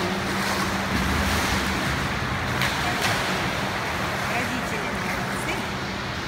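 Water splashing from a swimmer's backstroke arm strokes and kicks, a steady rush of noise with a low hum underneath.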